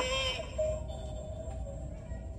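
Animated half-skeleton Halloween prop playing its built-in sound through a small speaker: a voice trails off in the first half-second, then one long steady tone fades out.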